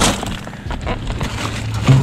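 Plastic produce bags and packaging crinkling and rustling as they are shifted by hand, with a sharp crackle at the start, over a low steady hum.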